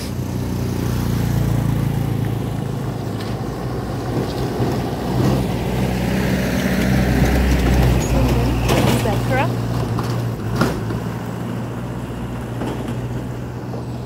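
Engines of road traffic driving past on a dirt road: a motorcycle near the start, then a small light truck that is loudest as it passes about eight seconds in.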